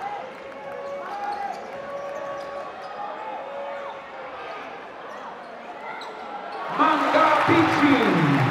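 Live sound from a basketball game on a hardwood court: the ball bouncing and sneakers squeaking. Voices call out, growing much louder about seven seconds in.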